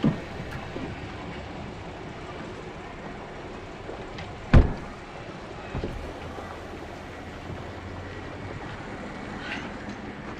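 A car door shutting with one loud thud about halfway through, over the low steady hum of a car engine idling at the kerb. A second, softer knock follows about a second later.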